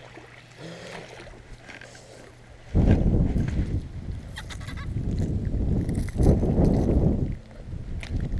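Quiet for about the first three seconds, then loud, low rumbling buffeting on the camera's microphone, with a few short dips, while a hooked small bass is swung up out of the water.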